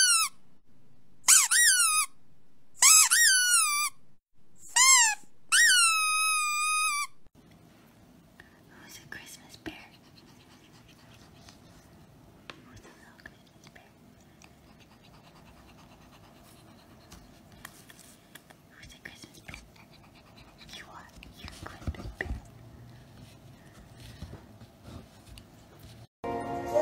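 Five loud, high-pitched squeaks, each bending in pitch, come one after another over the first seven seconds, the last one the longest. They are sounds played to provoke a dog's reaction. After them the sound drops to a faint room with scattered small ticks and rustles.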